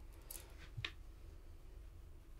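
Quiet room tone with a low hum and two faint, brief swishes, a makeup brush being flicked across the skin to lay on contour.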